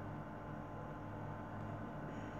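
Faint room tone: a steady low hum with a light even hiss.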